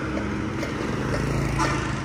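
Motor scooter engine running as it passes close by, a steady hum whose pitch drops about a second in, over general street traffic noise.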